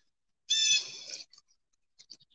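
A high-pitched animal cry, held steady for under a second, starting about half a second in, followed by a few faint short chirps.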